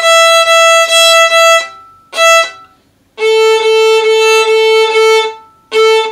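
Violin bowing the 'Mississippi stop stop' rhythm on open strings: a run of quick strokes then one short note on the open E string, then, after a pause, the same pattern on the open A string, a fifth lower.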